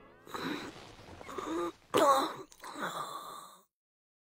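A man's voice making sleep sounds: four short snores and grunts spaced across a few seconds. The sound then cuts off to silence shortly before the end.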